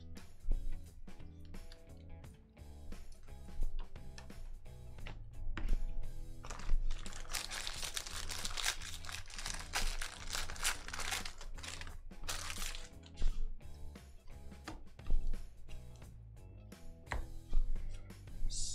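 Foil trading-card pack wrapper crinkling and tearing as it is ripped open, a dense crackle from about seven seconds in that stops near thirteen seconds, over background music; short clicks of cards being handled come before and after.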